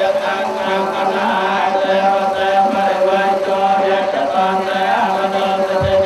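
Buddhist monks chanting in unison during a water-blessing rite: a steady, droning recitation with long held notes and no pauses.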